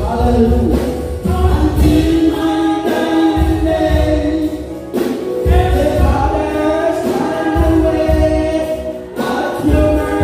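A woman and a man singing a gospel song together into microphones, with held, sliding notes over an amplified accompaniment that has a pulsing low beat.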